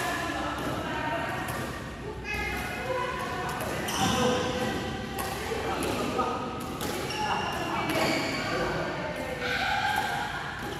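Badminton rally in a reverberant hall: rackets striking the shuttlecock with a sharp crack every second or two. People's voices are heard throughout, about as loud as the hits.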